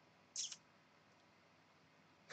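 Near silence: room tone, broken once, about a third of a second in, by a brief faint breath noise from the man at the microphone.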